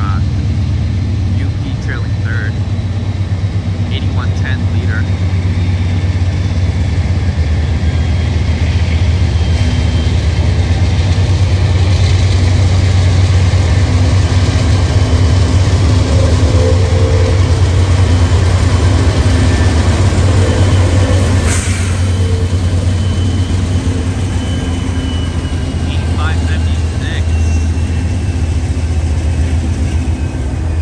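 Diesel-electric freight locomotives approaching and passing, a heavy steady low engine drone that grows louder as the lead units draw near.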